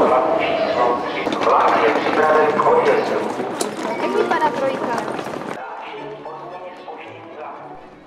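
Indistinct voices talking over background music. About five and a half seconds in, the sound turns abruptly duller and quieter, then fades away.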